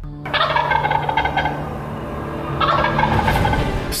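Wild turkey gobbling, growing louder again about two and a half seconds in.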